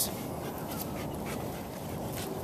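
An Old English Sheepdog makes a few faint, short sounds over a steady background hiss while she wears a head collar fitted for the first time.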